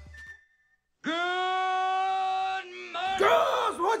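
Holiday music fading out, a moment of silence, then a loud yell held on one steady pitch for about a second and a half, followed by more yelling that slides up and down in pitch, leading into a shouted 'What's up?'.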